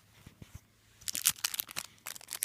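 Packaging crinkling and tearing as an album box set is unwrapped: quiet for about a second, then a quick run of sharp crackles.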